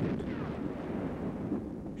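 Low, steady rumble of distant explosions, heavy naval gunfire and shell hits.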